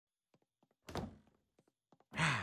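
A single door thunk about a second in, dying away quickly, with a few faint footstep taps before and after it.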